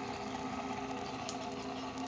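Small fan motor driving the rubber-band belt of a homemade Van de Graaff generator, running with a steady hum. A faint tick sounds a little past a second in.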